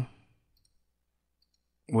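Near silence between the narrator's words: a word trails off just after the start and speech resumes near the end.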